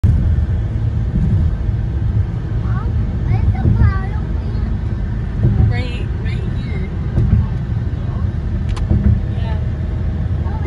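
Steady low road and engine rumble of a car driving at speed, heard inside the cabin, with a single sharp click about nine seconds in.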